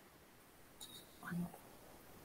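Quiet room tone over an online call, with one brief, faint spoken syllable about a second and a half in.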